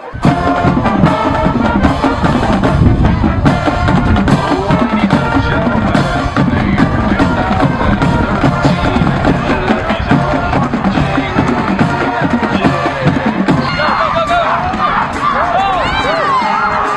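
High school marching band playing on the field: brass holding chords over a drumline beat, starting suddenly. Near the end, crowd shouts and cheers come in over the band.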